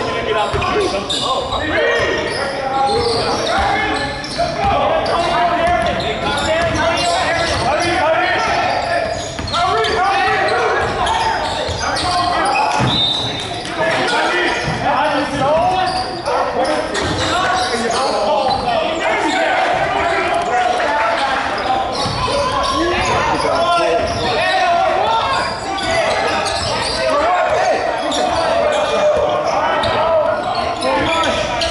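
Many voices of players and spectators talking and calling out indistinctly, echoing in a large gymnasium, with a basketball bouncing now and then on the hardwood court.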